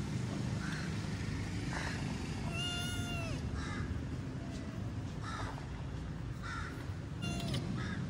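A long-haired kitten meowing: one long, high meow about three seconds in and a shorter one near the end, over steady low background noise and repeated short calls.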